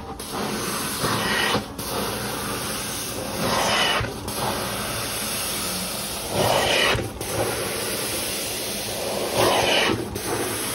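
Hot water extraction stair tool spraying and vacuuming across carpeted stair treads: a steady rushing hiss of spray and suction, surging louder on each stroke about every two to three seconds.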